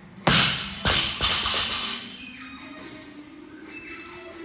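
Loaded barbell with rubber bumper plates dropped to the gym floor: one loud impact about a third of a second in, then two smaller bounces around a second in, with a clatter that dies away by about two seconds in. Background music plays throughout.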